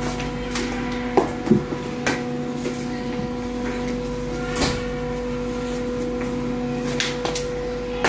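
Hockey stick striking a puck on a rubber training floor: a string of sharp knocks, the two loudest close together about a second and a half in. A steady mechanical hum runs underneath.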